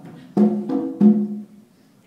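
Conga drums struck by hand in a slow bolero pattern: three strokes about a third of a second apart, mostly ringing open tones, then the drums die away near the end.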